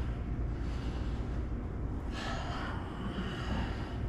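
A man breathing out hard after a resistance-band exercise, one loud breath about two seconds in and a softer one near the end, over a steady low hum.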